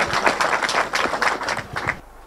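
A small gathered audience applauding: a dense, irregular patter of hand claps that thins out and drops in level near the end.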